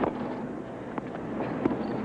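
Tennis ball struck by rackets and bouncing during a rally in a broadcast tennis match: three sharp pops, at the start, about a second in and shortly after, over steady background noise.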